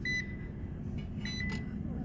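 A digital clamp meter (Fieldpiece SC260) beeping twice, short high beeps, the first at the start and a slightly longer one a little over a second in, over a steady low hum.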